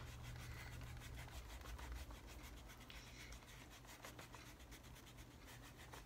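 Faint, quick back-and-forth rubbing of a pencil eraser on cardboard, erasing mechanical-pencil writing.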